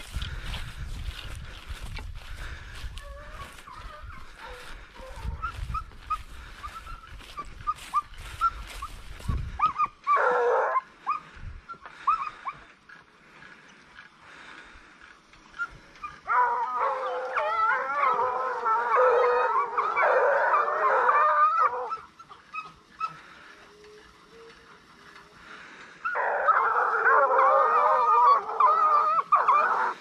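A pack of Ariégeois scent hounds baying on a trail in repeated bursts of voice: a short burst about a third of the way in, a long chorus through the middle, and another chorus starting near the end. In the first third there is a low rumble with rustling.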